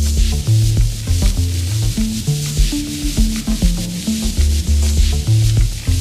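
Acid techno played live on Roland TB-303 bass synthesizers over a Roland TR-606 drum machine. A sequenced bassline of short held notes steps up and down over low drum thumps and a hissing high end.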